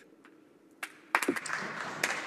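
Applause from a legislative chamber starting about a second in after a brief hush: many people clapping and thumping their desks, a dense patter with sharp knocks.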